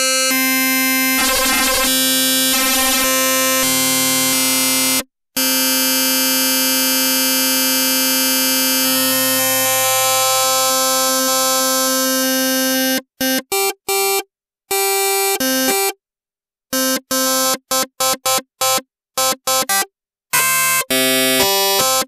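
Yamaha Reface DX FM synthesizer sounding a held note in a harsh, metallic, very bright tone from one carrier with three stacked modulators, before any envelope is set. Its overtones shift as the modulator levels and ratios are changed. About 13 seconds in, the held note gives way to short, choppy notes with gaps between them.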